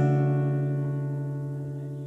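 Acoustic guitar with a capo, a C/B (C over B) chord ringing and slowly dying away.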